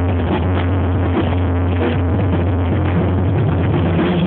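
Live Mexican banda music played loud, with a heavy bass line under the band, recorded close to the stage in a dense, muddy sound.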